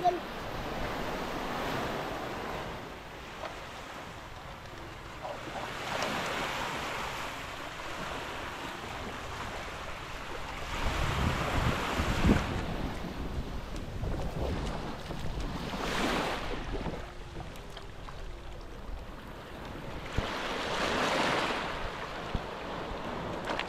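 Small waves washing onto a sandy beach, swelling and fading about every five seconds, with wind rumbling on the microphone.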